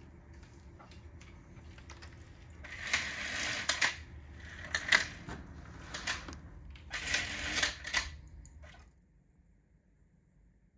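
A window shade being opened by hand: two bursts of rattling and scraping, about three seconds in and again about seven seconds in, with scattered clicks between them.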